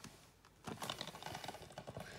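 Blu-ray case in a cardboard slipcover being picked up and handled: a faint run of light, irregular clicks and rustles starting under a second in.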